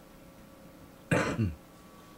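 A person clearing their throat, a short two-part burst about a second in.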